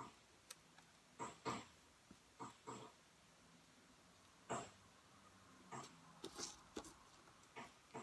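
Near silence broken by about nine short, soft rustles and taps as paper strips are handled and pressed onto a card.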